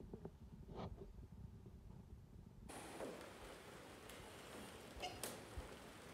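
Near silence: faint rustling and handling noise, with a soft click about a second in and another near the end.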